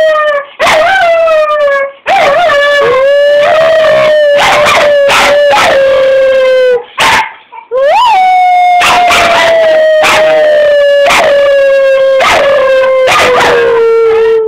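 Cocker spaniel howling loudly and close up in long, drawn-out 'woooo' notes. Each note starts a little higher and slides slowly down in pitch. There are about three long howls with brief breaks between them.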